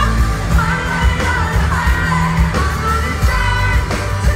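Rock band playing live, heard loud from the audience: a singer's voice holding long notes over drums, bass and guitars.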